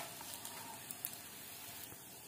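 Paneer-almond kebabs shallow-frying in a little oil in a non-stick pan: a faint, steady sizzle with a few small crackles, after a light click right at the start.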